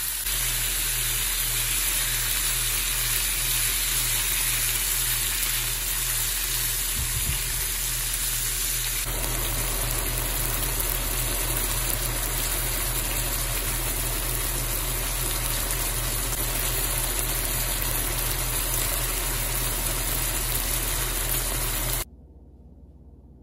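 Pork strips and onions frying in a skillet: a steady sizzling hiss. About nine seconds in it becomes fuller and lower as the meat cooks in its released juices.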